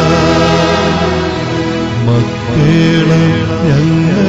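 A devotional hymn being sung, with long held notes that slide from one pitch to the next over a steady instrumental accompaniment.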